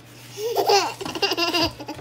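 A toddler laughing in high-pitched peals, starting about half a second in.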